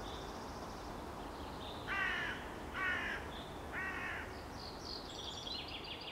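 Three loud bird calls about a second apart, with higher, quicker bird chirps near the end, over a steady outdoor background hum.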